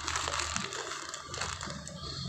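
Thin plastic bag crinkling and rustling as hands squeeze and open it, with irregular small crackles.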